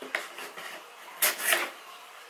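A knife blade slitting the sticker seal on a cardboard box: short scraping, cutting sounds, the loudest a pair of sharp scrapes about a second and a half in.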